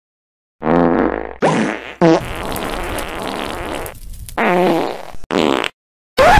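A record-scratch sound effect: about five scratches after a short silence, each wavering up and down in pitch, the middle one the longest.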